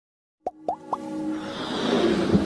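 Intro jingle: three quick rising bloop sound effects about half a second in, then music swelling steadily louder.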